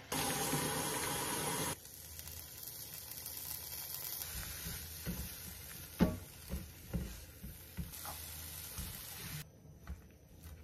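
Teriyaki sauce poured into a hot frying pan sizzles loudly for nearly two seconds. Then comes a quieter sizzle of spring onions and carrots sautéing, with a spatula knocking and scraping against the pan several times.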